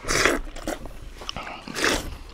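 People slurping and sucking kheer (rice pudding) straight off their plates with their mouths, hands-free. There are two loud, noisy slurps, one at the start and one near the end, with quieter smacking between.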